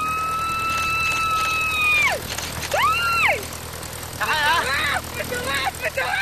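High-pitched screams and whoops from a tandem skydiver in freefall over a steady rush of wind: one long held scream, a short rising-and-falling yell about three seconds in, then warbling whoops near the end.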